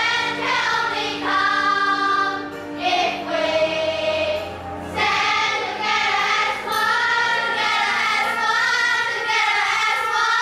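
A children's choir singing an English song in unison, its notes held long and steady in the second half.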